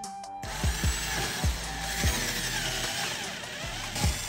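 Cordless drill boring into a hardened patch of superglue and baking soda on a wooden board. The motor whines and wavers in pitch from about half a second in until near the end. Background music with a steady beat plays under it.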